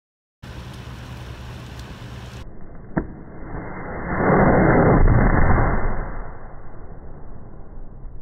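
Liquid nitrogen soda bottle rocket firing in the hands: a sharp click about three seconds in as it lets go, then a loud rushing hiss of nitrogen gas jetting from the plastic bottle's nozzle that swells for a couple of seconds and slowly dies away.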